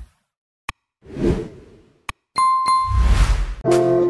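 Animated end-screen sound effects: a sharp click, a whoosh, another click, two short bright dings, then a louder whoosh with a low rumble. Music with sustained notes begins near the end.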